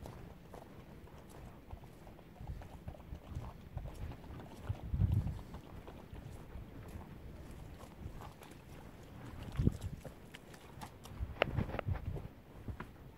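Footsteps on a wet, muddy track, heard from a phone in a jacket chest pocket, with jacket fabric rubbing on the microphone and low thumps about five seconds in and again near ten seconds. A few sharper clicks come near the end.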